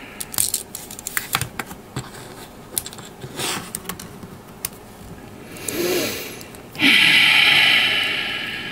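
Small sharp plastic clicks and taps as snap-fit plastic model-kit parts are handled and pressed together. About seven seconds in, a sudden loud breathy rush of noise that fades away over about two seconds.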